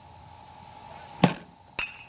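A two-wheel pitching machine fires a baseball with a sharp knock, and about half a second later a metal bat hits it with a crack that rings briefly.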